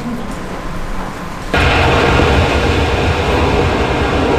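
Steady aircraft noise from the short film's soundtrack, played over the hall's speakers, cutting in suddenly about a second and a half in and holding loud and even.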